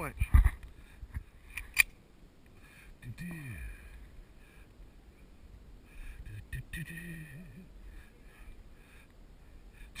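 A loud thump just after the start and a sharp click at about two seconds, then only faint, brief voices.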